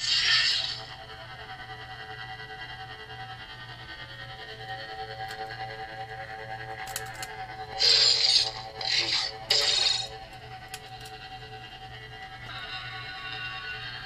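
TeensySaber V3 lightsaber soundboard playing its sound font through the hilt speaker. The saber ignites at the start, then runs a steady electric hum. Three short, louder effect sounds come between about 8 and 10 seconds in, and near the end a denser lockup sound begins over the hum.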